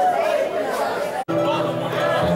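People talking and chattering around a live band, with some music underneath; the sound cuts out for an instant a little past a second in, and after it the band's steady held notes begin.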